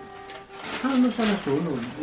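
Low, indistinct talking that starts about a second in, with the light rustle of a cardboard gift box being handled.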